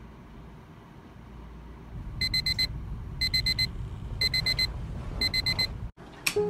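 Digital alarm clock going off about two seconds in: rapid groups of four high beeps, one group a second, four groups in all, over a low steady hum.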